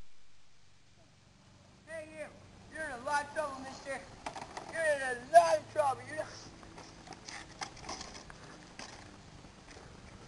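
A person's high-pitched voice calling out in loud, wavering bursts without clear words, starting about two seconds in and stopping about six seconds in, followed by a few faint knocks.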